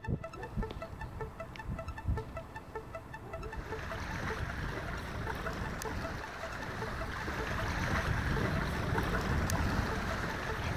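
Sea water washing over shoreline rocks, a steady rushing that swells after the first few seconds and grows slowly louder, with wind buffeting the microphone. Faint repeating music notes sound in the first few seconds.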